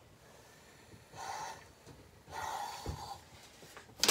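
Two short hisses of steam from an iron pressing fabric, the first about a second in and a longer one a little past halfway.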